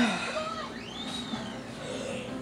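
Faint background audio with gliding, voice-like tones under a pause in speech, with a short breath at the very start.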